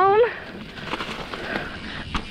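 Mountain bike rolling fast down a leaf-strewn dirt trail: a steady rushing of tyre and riding noise with faint rattles.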